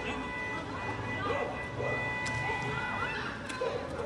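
Indistinct voices of several people shouting during a street brawl, with a steady high tone in the background that stops about three seconds in.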